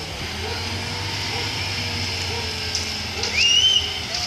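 Terex truck crane's diesel engine running steadily during a lift, under faint workers' voices. A little over three seconds in, a short high whistle-like tone rises and holds for about half a second.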